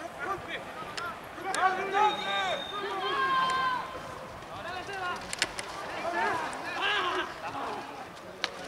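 Several men shouting calls on the field during open play in a rugby match, their voices overlapping and loudest in the first half, with a few sharp clicks in between.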